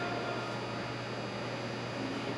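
Steady room tone: an even hiss with a constant low hum and no distinct event.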